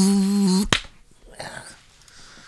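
A man's voice holds one long, slightly wavering note that stops just over half a second in. Right after it comes a single sharp snap, and then it goes quiet.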